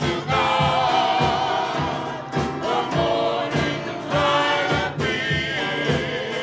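Gospel choir singing in harmony, with accompaniment keeping a steady beat underneath.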